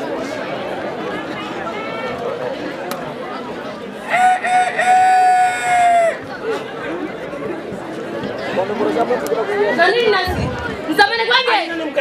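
A single long rooster-like crow, held on one pitch for about two seconds, starting about four seconds in, over the murmur of crowd chatter and voices.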